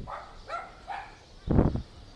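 A dog barking a few times: faint barks in the first second, then one louder, short bark near the end.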